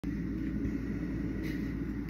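A steady low rumble of background machinery, even in level, with no breaks.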